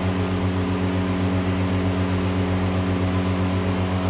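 Steady low hum of a running machine, one unchanging drone made of several even tones.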